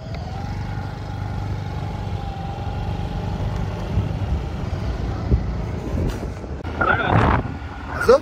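Motorbike engine running steadily while riding, a low rumble with a faint slowly wavering whine over it. A brief loud burst of noise comes about a second before the end.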